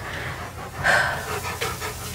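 A dog panting, with a louder breath about a second in.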